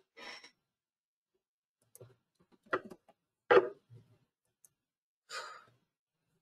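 A person's audible sighs or exhaled breaths, one just after the start and one near the end, with two short sharp noises in between, the louder about three and a half seconds in.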